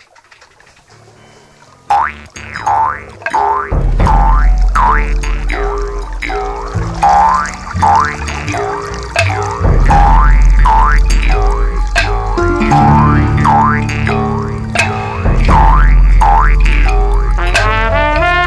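Instrumental band music starting up from a faint opening. A lead line of repeated swooping notes that dip and rise in pitch enters about two seconds in, and low bass notes join a couple of seconds later.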